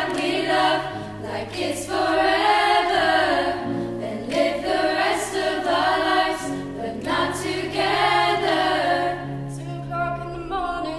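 Girls' choir singing unaccompanied in parts, sustained chords with a held low line beneath, in a series of swelling phrases.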